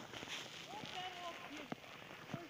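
Footsteps crunching in snow on a packed path, a steady run of short steps, with a few short faint voice-like calls about a second in.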